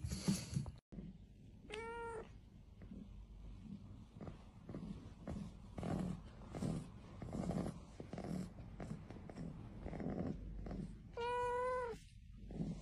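A kitten meowing: one short, high meow about two seconds in and a longer one near the end, with quieter low rhythmic sounds in between. A couple of sharp knocks sound in the first second, before a sudden cut.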